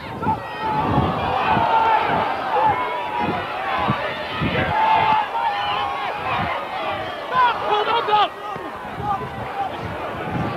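Rugby crowd shouting and cheering, many voices overlapping and swelling as play moves wide, then dropping off suddenly about eight seconds in.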